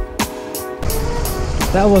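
Electronic music with a deep falling bass beat stops a fraction of a second in. After a short gap comes a steady low rumble of a scooter engine idling at a standstill, and a man starts speaking near the end.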